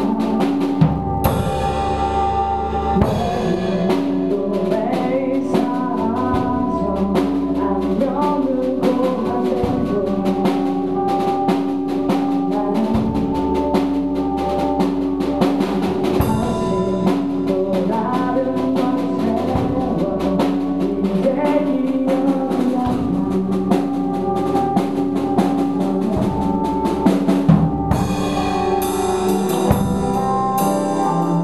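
Live band playing a song: a woman singing over strummed acoustic guitar, electric bass and a drum kit.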